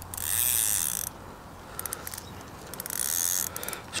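Fishing reel being wound in, the line retrieved to bring the float rig back. It whirs in two spells of about a second each, with a few short clicks in between.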